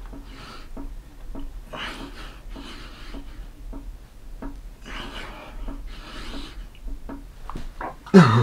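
A man breathing hard through a set of push-ups, a rough, hissy exhale about every second as he presses up. There are a few faint knocks and rustles from his hands on the cloth mat.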